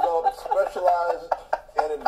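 Several people laughing hard together in short, repeated bursts.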